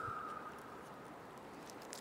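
Faint crackle and patter of toasted bread topped with salsa being handled and lifted off a wooden chopping board. A faint high steady tone fades out within the first half second.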